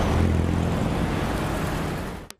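Busy road traffic, a steady roar of engines with a low hum, cutting in suddenly and fading out near the end.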